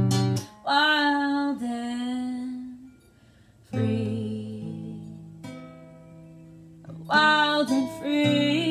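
A woman singing to her own acoustic guitar. A sung phrase over strummed chords breaks off into a short near-silent gap about three seconds in. A chord then rings out, and singing comes back near the end.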